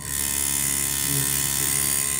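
Electrically maintained tuning fork of a Melde's apparatus switched on, starting suddenly into a steady electric buzz as its make-and-break contact keeps the fork vibrating.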